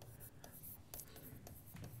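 Faint scratching and tapping of a pen writing letters on a whiteboard.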